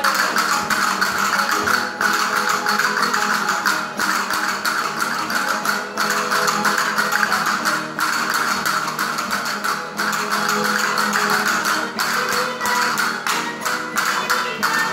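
Live Spanish folk music from a rondalla-style group: strummed and plucked guitars and string instruments playing a lively dance tune, with frequent sharp percussive clicks over it.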